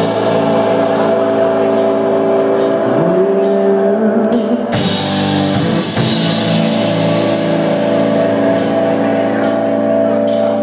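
Live rock band playing an instrumental passage: two electric guitars with sustained notes, one bending upward twice, over a drum kit with regular cymbal strokes.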